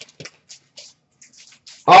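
Faint, scattered rustles and ticks of trading cards being handled and sorted, followed near the end by a man starting to call out a card.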